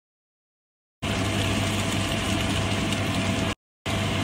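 Steady motor hum with hiss, like a kitchen appliance running. It starts abruptly about a second in, cuts out briefly near the end, and starts again.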